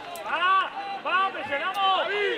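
Three short shouted calls from the football pitch, each rising and falling in pitch.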